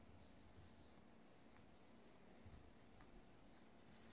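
Faint scratching of a pen writing a signature on a photograph, in short, irregular strokes.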